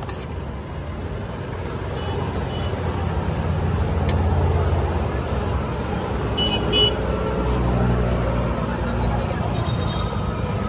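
Street traffic: a motor vehicle's engine rumbles past, swelling for several seconds, with two short high beeps of a horn, the second and louder about seven seconds in.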